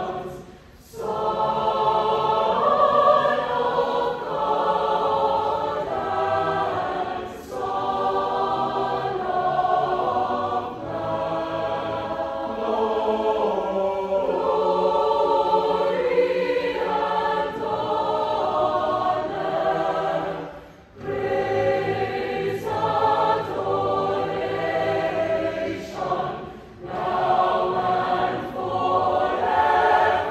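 Large mixed choir singing a slow, sustained hymn-like piece in long phrases, with brief breaks for breath about a second in, about two-thirds of the way through and again a few seconds later.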